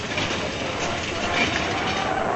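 A train or streetcar running on its rails: a steady rattling rail noise, with a faint steady tone joining about halfway through.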